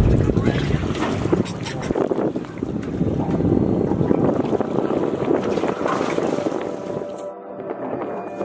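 Wind buffeting the microphone and sea noise aboard a small boat, with background music underneath. Shortly before the end the wind and sea noise cut out suddenly, leaving the music.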